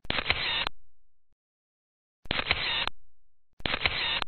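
Photo booth camera shutter sound, three times. Each is a click followed by a short sound that fades out in under a second. The first comes right away, the second about two seconds later, and the third a little over a second after that.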